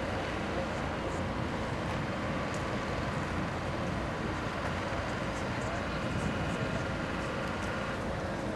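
Steady outdoor rumble of engines and traffic, with indistinct voices murmuring in the background.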